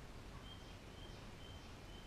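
A bird chirping faintly, four short high notes at the same pitch about half a second apart, over quiet room tone.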